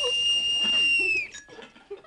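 A speaking-tube whistle sounding one steady shrill note, the call to answer the tube. It cuts off sharply about a second in, with faint voices under it.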